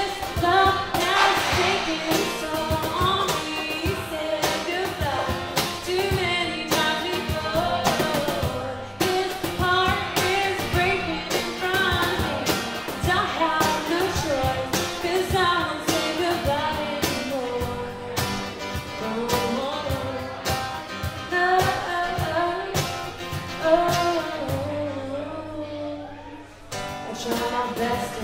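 Live acoustic music: a woman singing over acoustic guitar with a cajon keeping the beat. It dips briefly near the end before the song picks up again.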